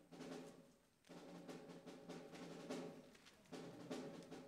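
Very faint brass band music: the soft opening of the piece, with low held notes and scattered soft drum strokes, growing louder near the end.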